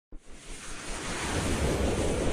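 Rushing whoosh sound effect of an animated logo intro, swelling steadily louder after a brief tick at the very start.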